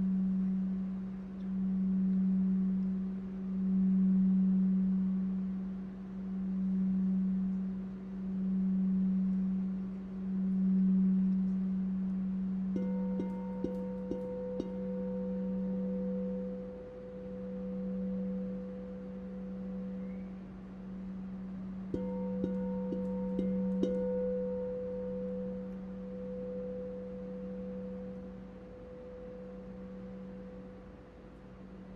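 Large gold-tinted crystal singing bowl sung by a mallet rubbed around its rim: a low steady hum that swells and fades every second or two. A higher ringing tone joins after a few quick taps about 13 seconds in, fades, then returns after more taps about 22 seconds in.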